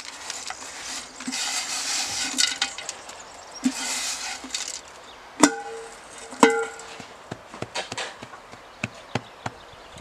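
Slightly moist powdered charcoal shaken out of a metal pot into the base of a clay bloomery furnace, a gritty rustle. Then two sharp metallic knocks about a second apart, each ringing briefly. After that come small crunching clicks as the charcoal is packed down by hand.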